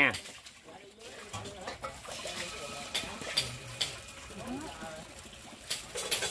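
A metal ladle scooping batter from a bowl and pouring it into a hot, oiled cast-iron bánh khọt mold, with a few light clinks of the ladle and a soft sizzle as the batter hits the pan.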